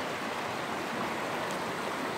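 Steady rush of running water.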